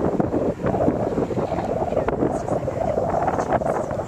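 Wind buffeting the microphone: a steady, gusting rush.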